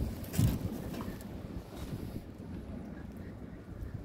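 Low, steady wind rumble on the phone's microphone, with a short bump about half a second in.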